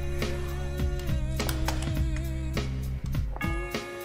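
Background music with a steady drum beat over sustained notes and a deep bass line. The bass drops away briefly near the end.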